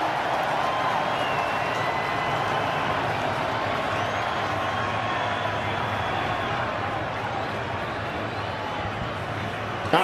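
Steady crowd noise from a large football stadium crowd, a dense wash of many voices that eases slightly near the end.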